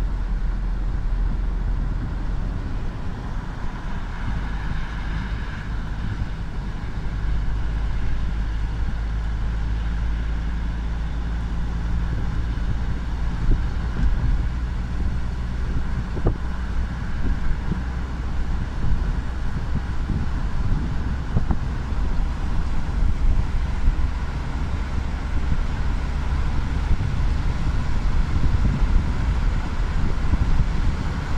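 Car driving along at speed, heard from inside: a steady low rumble of road and engine noise.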